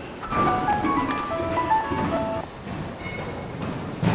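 A short tune of about ten clear single notes, played quickly at changing pitches over roughly two seconds, then a brief higher tone near the end. Low dull thuds run underneath.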